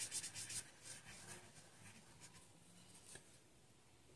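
Felt-tip marker rubbing on paper as a circle is coloured in, with quick faint scribbling strokes in the first half-second, then only faint scattered scratches.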